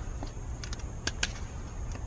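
Steel blade of a folding pocket knife shaving a wooden stick in short strokes: a handful of light clicks and scrapes.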